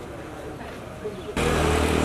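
Voices talking outdoors, then about a second and a half in an abrupt jump to louder outdoor noise with an engine running steadily under the voices.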